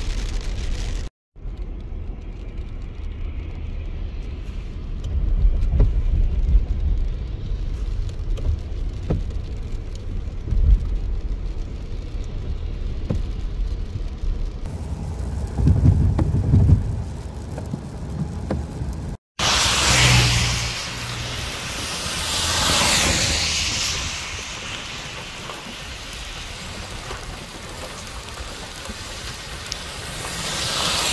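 Low rumble of a car driving on a wet road in rain, heard from inside the cabin, with a few thumps. After a cut about two-thirds through comes a louder, even hiss of rain and wind outdoors beside the wet road, swelling and easing.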